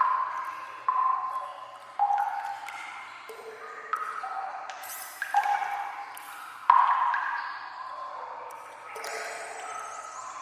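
Water drops falling into standing water in an echoing sewer tunnel, each one a ringing, pitched plink that dies away slowly. They come about once a second at uneven intervals, at different pitches, the loudest a little past halfway.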